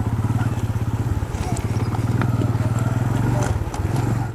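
Motorcycle engine running at low revs with an even, rapid pulsing beat as the bike creeps down a steep gravel track, with a few faint clicks over it.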